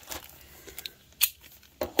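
Thin plastic packaging crinkling and rustling as fingers pick at it, with a sharp crackle a little past the middle and another near the end: an unsuccessful attempt to tear open the plastic wrapper.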